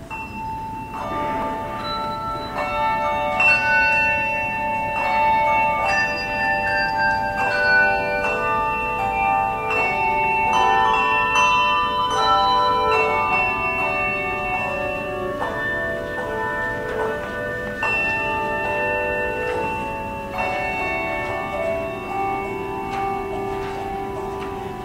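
Handbell choir ringing an introduction: single struck bell notes and chords that ring on and overlap, with new notes struck every second or so.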